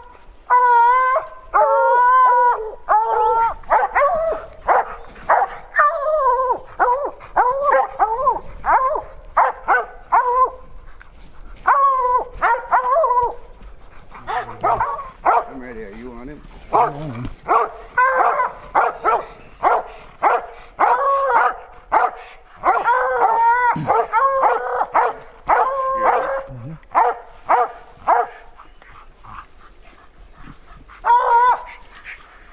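Hunting hounds baying at a mountain lion they have treed, a steady run of loud pitched bawls and barks, one after another.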